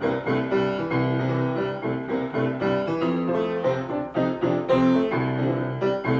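Upright piano played with both hands: a continuous run of chords and melody notes over a repeated low bass note.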